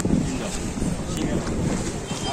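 Wind rumbling on the microphone over street background noise, with faint voices.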